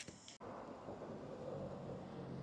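Faint outdoor street ambience: a steady hiss of background noise with a low, steady hum coming in partway through. There is a brief click and dropout near the start.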